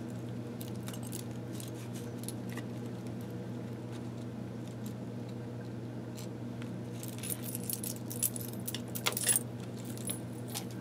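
Small metal charms clinking and jingling as they are handled, with scattered light clicks and a quick run of jingling near the end, over a steady low hum.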